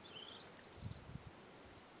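Near silence with faint outdoor background: a faint high chirp just after the start and a few soft low thumps about halfway through.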